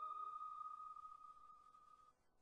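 The dying tail of a struck, bell-like musical chime: one high ringing tone that fades steadily away and stops just at the end.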